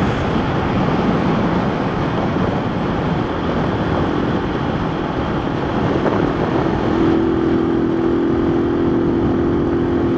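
Honda Twister motorcycle's single-cylinder engine cruising at steady throttle, with wind rushing over the microphone. A steady engine hum comes up about four seconds in and grows stronger a few seconds later. The engine is being run in with its carburettor set rich, which the rider feels is costing a little power.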